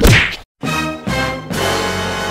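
A loud, sudden whack with a swish right at the start, cut off into a moment of dead silence; then music with sustained chords starts up about half a second in and carries on.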